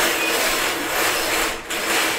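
Wire raffle drum turned by hand, the balls inside tumbling and rattling against the wire cage in a steady rush, with a brief dip about one and a half seconds in.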